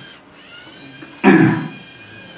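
Lego Mindstorms EV3 robot's servo motors whirring faintly as the tracked robot turns in its dance routine, with one short loud sound a little after a second in.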